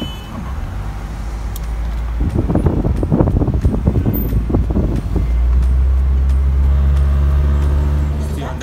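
Car cabin noise on the move: a loud low rumble with a stretch of rough, uneven buffeting in the middle, settling into a steady low drone for the last few seconds.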